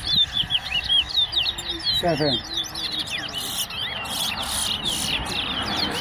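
Caged towa-towa (large-billed seed finch) singing its competition song: a fast, continuous run of short whistled sweeping notes, high-pitched. A man's voice counts the songs about two seconds in.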